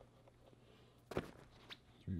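Mostly near silence, broken by a short knock about a second in and a fainter click just after, as rolls of athletic tape are handled and taken out of a suitcase.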